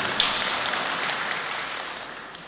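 Audience applause, dying away steadily over about two seconds.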